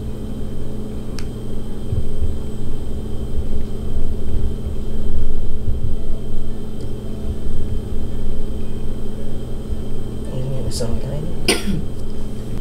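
A steady low hum with uneven low rumbling underneath, and near the end a short voiced sound followed by a single cough.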